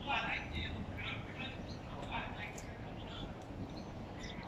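Faint voices over a steady outdoor background rumble, with a few short high clicks or chirps.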